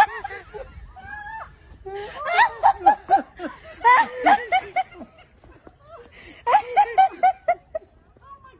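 A person laughing uncontrollably in three bursts of quick, high-pitched, repeated 'ha' sounds.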